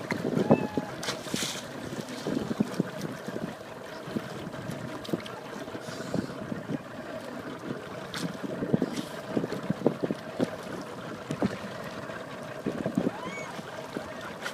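Sea water lapping and splashing around swimmers in irregular small slaps, with wind buffeting the microphone.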